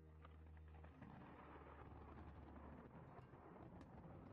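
Near silence: a faint, steady noisy background wash that thickens about a second in, with a low hum that fades out a little before the end.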